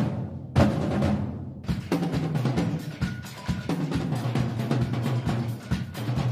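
Dramatic background score of rapid, deep drum strikes over a steady low tone, with one loud hit about half a second in.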